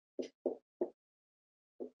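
Dry-erase marker strokes on a whiteboard: three short strokes in quick succession in the first second, then one more near the end.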